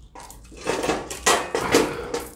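Aluminium foil crinkling and crackling as hands pull open a foil packet, in several bursts that are loudest in the second half.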